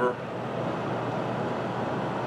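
Hitzer 710 anthracite coal stoker furnace running: a steady, even fan whir and hum.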